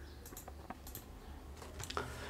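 Faint, scattered clicks of computer keyboard keys, a few light taps that come closer together near the end.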